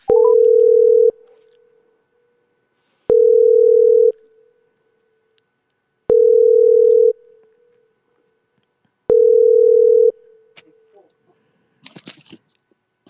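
Telephone ringback tone: four steady beeps of about a second each, three seconds apart, each starting with a click. The called phone is ringing and not yet answered.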